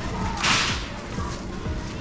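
A short swish of crinkly plastic about half a second in, as a bagged pack of carrots is handled and picked up from its crate.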